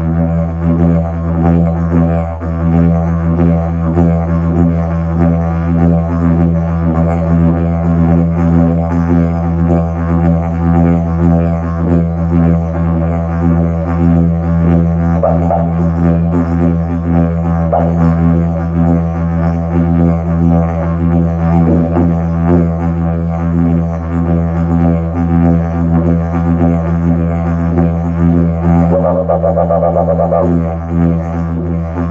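Hemp didgeridoo in E playing an unbroken low drone, with a rhythmic beat rippling through its overtones. Brief higher-pitched accents rise over the drone a few times, with a longer one near the end.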